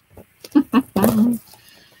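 A woman's short laugh: two or three quick voiced bursts starting about half a second in, ending in a longer one just after a second in.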